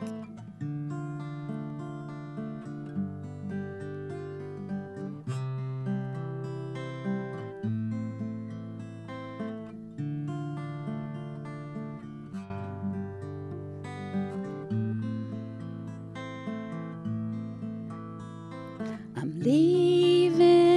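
Steel-string acoustic guitar played solo in a slow, gentle song, picked chords changing every second or two. A woman's singing voice comes in loudly near the end.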